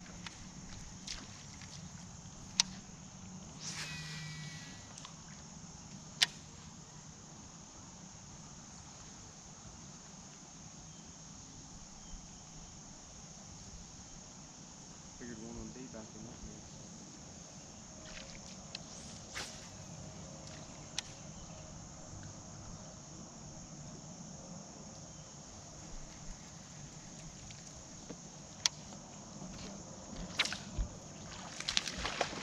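Quiet outdoor ambience dominated by a steady high-pitched insect chorus, with a few sharp clicks scattered through it.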